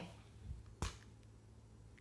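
A single sharp click a little under a second in, with a weaker tap just before it, over a faint steady low hum.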